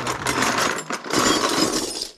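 A tubful of metal saxophone keys is tipped out of a plastic tub onto a wooden workbench: a loud jangling metal clatter lasting about two seconds, with a brief dip about a second in.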